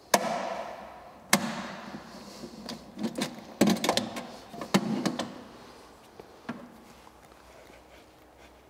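Handling noise as a frequency converter is unlatched and unplugged from a mixing pump: a sharp plastic-and-metal clack at the start that rings on briefly, another about a second later, then several bursts of clicks and rattles over the next few seconds as the housing and its plug connector are worked loose.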